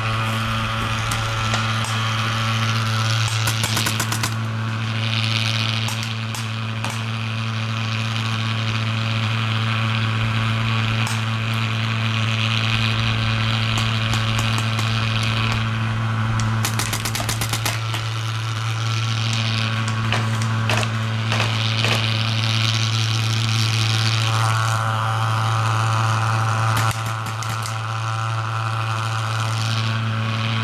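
Several short bursts of rapid paintball marker fire, each a quick string of pops, over a steady low mechanical hum.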